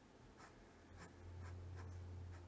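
Faint strokes of a felt-tip fineliner pen hatching on paper, a few short scratches. A faint low hum comes in about a second in.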